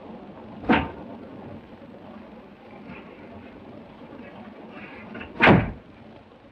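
Train compartment door sounds: a short, sharp thud under a second in, then a louder thud of the door near the end.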